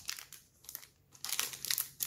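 A clear plastic packaging bag crinkling as it is handled, faintly at first and louder in the last second.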